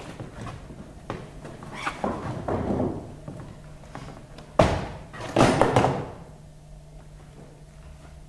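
Scattered knocks and scraping, then a sharp thud about four and a half seconds in, followed by a rough rushing noise lasting most of a second. A low steady hum runs underneath.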